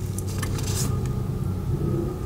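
Low, steady rumble like a motor vehicle's engine, growing slightly louder, with faint rustling of tarot cards being handled.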